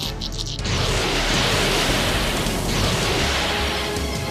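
Animated sound effect of a volley of darts flying: a loud, sustained rushing whoosh from about a second in, over dramatic background music.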